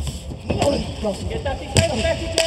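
A strike landing at close range in a Muay Thai exchange: one sharp smack about three-quarters of the way through, over shouting voices.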